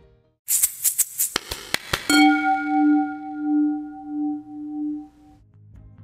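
Short musical transition sting: a rapid shaker-like rattle of clicks for about a second and a half, then a single struck bell-like chime that rings with a slow pulsing wobble for about three seconds and cuts off near the end.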